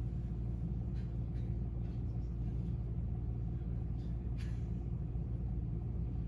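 Steady low rumble of room background noise, with two or three faint brief clicks.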